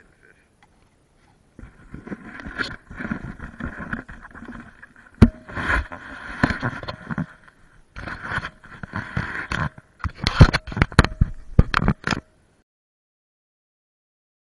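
Handling noise from an action camera being fitted onto a head mount: rubbing and scraping right on the microphone with sharp knocks, thickest near the end, cutting off abruptly about twelve seconds in.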